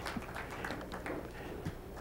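Billiard balls clicking faintly a few times as they are gathered by hand on the pool table, over a low murmur of room noise.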